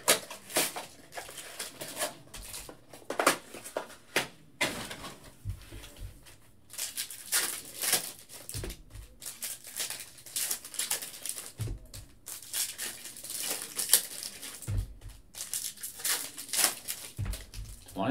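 Foil trading-card pack wrappers crinkling and tearing as packs are opened by hand, with the cards inside rustling and clicking against each other in a steady run of short crackles.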